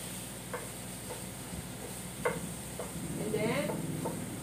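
Shrimp sizzling in a frying pan, stirred with a wooden spatula, with a few short sharp clicks of the spatula against the pan.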